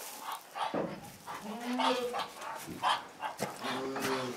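Two or three short animal calls in a barn, one about a second and a half in and another near the end, with footsteps and rustling in straw between them.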